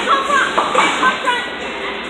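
Brief, indistinct voices of people talking over a steady background of bowling-alley noise.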